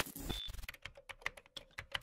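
Computer keyboard typing: a quick, uneven run of about a dozen keystroke clicks, over a faint steady hum, with a brief high beep near the start.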